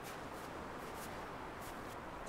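Faint, steady scraping hiss of snow under a snowboard, with soft crunches as chunks of snow are pushed down the slope.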